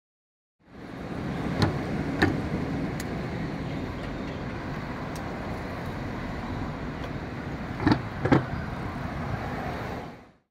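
Steady road traffic noise fading in, with several sharp knocks: two about one and a half and two seconds in, and a louder pair near the end.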